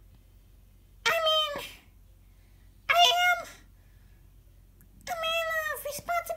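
Three drawn-out, high-pitched meows at about one, three and five seconds in; the last is the longest.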